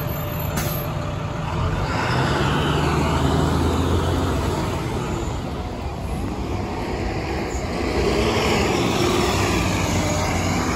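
Nova Bus LFS city bus pulling away from the stop, its engine rising in pitch as it accelerates, easing off, then rising again near the end. A brief sharp noise comes just under a second in.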